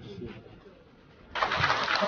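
A room breaks into applause suddenly about a second and a half in, after a quiet stretch with faint low voices.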